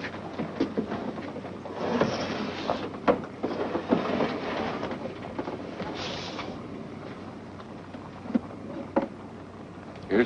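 Clicks and knocks of hands working at a wooden cabinet radio set, with a stretch of hiss from about two to six and a half seconds in.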